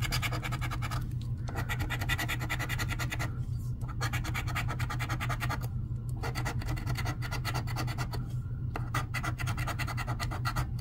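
A coin scraping the coating off a scratch-off lottery ticket in rapid back-and-forth strokes. The scratching comes in runs broken by about four short pauses as the coin moves to the next spot.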